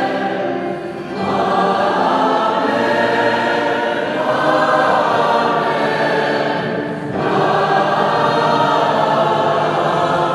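Choir singing, with sustained phrases and brief breaks between them about a second in and again about seven seconds in.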